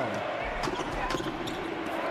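Basketball dribbled on a hardwood court during live play, a few sharp bounces over the arena's background noise.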